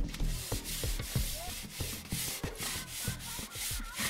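Steel dishes being scrubbed by hand: repeated rasping scouring strokes, two or three a second, with light clinks of metal.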